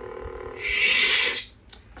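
Lightsaber hum from a Proffieboard saber's small hilt speaker. About half a second in comes a loud hissing swell, and at about a second and a half it cuts off together with the hum, like the blade's power-off (retraction) sound.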